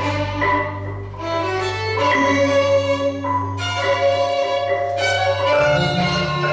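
Violin playing held, sustained notes together with marimba and electronic accompaniment, over a steady low tone that shifts to a different pitch near the end.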